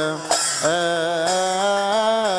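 A male cantor chants an Arabic Coptic hymn in long, ornamented melismatic phrases over a steady low held note. He breaks briefly for a breath about a third of a second in, then the phrase resumes.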